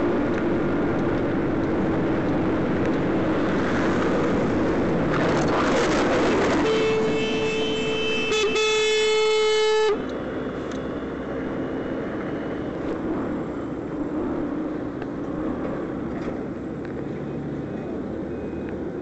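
Road and wind noise from a moving scooter in traffic. About a third of the way in, a vehicle horn sounds one long, steady blast of about three seconds, cut off sharply. Quieter road noise follows.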